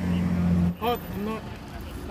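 A low, steady motor hum, like an idling engine, loudest for the first moment and then fading back, with a short spoken reply about a second in.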